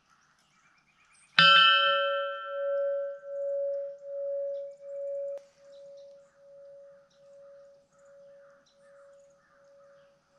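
A large hanging cylindrical bell is struck once about a second and a half in. It rings on as one pitched tone that pulses in slow beats and gradually fades.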